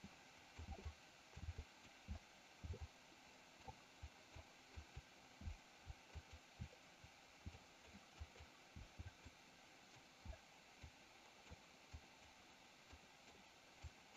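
Near silence: faint room hum with soft, irregular low thumps, a few each second.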